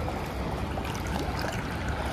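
Steady running and splashing water in a fish hatchery raceway.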